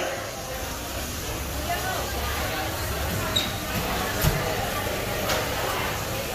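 Outdoor background sound: a steady low rumble with faint voices of people nearby and a few soft clicks.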